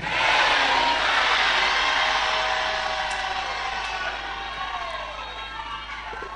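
Church congregation cheering and shouting together in response to a prayer declaration, loudest at the start and dying away gradually over several seconds.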